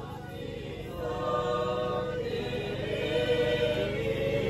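Several voices singing a slow liturgical hymn or chant together at mass, in long held notes that change about once a second, growing louder about a second in.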